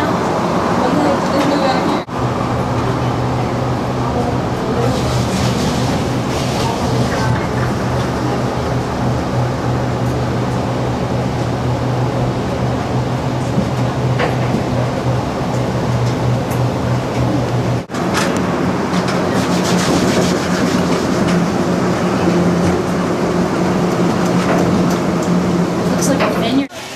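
Getty Center tram, a driverless cable-hauled people mover, running, heard from inside the car as a steady hum with a low drone. The sound drops out briefly about two seconds in and again near eighteen seconds, and the drone's pitch shifts at each break.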